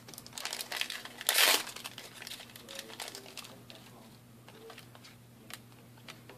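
Foil wrapper of a Force of Will trading-card booster pack crinkling and being torn open. The loudest rip comes about a second and a half in, followed by lighter, scattered crinkling.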